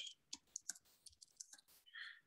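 Faint computer keyboard clicks: several irregular, scattered keystrokes of someone typing.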